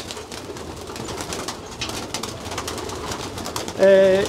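Racing pigeons fluttering and flapping their wings inside a small wooden loft, a continuous soft rustling flutter.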